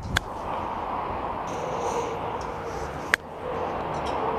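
Golf iron striking a ball cleanly, ball first and turf second: a crisp click just after the start. A second sharp click comes about three seconds in, over a steady outdoor background hum.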